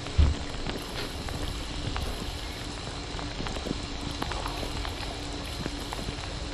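Shower spray falling on and around a GoPro Hero 7 in a bathtub, picked up by the camera's own built-in microphones: a steady hiss of water with scattered drop ticks and a faint low hum underneath. There is a low thump just after the start.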